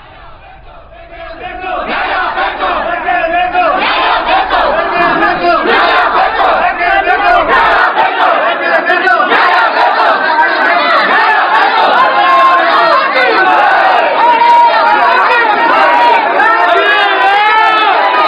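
A packed crowd of people shouting over one another. It starts fairly quiet, swells over the first two seconds, then stays loud.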